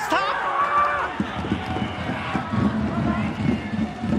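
Football stadium crowd: many supporters' voices singing and chanting together in a low mass of sound, following a goal.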